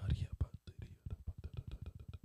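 Rapid whispered prayer spoken close to a microphone: a quick run of short, breathy bursts that starts and stops abruptly.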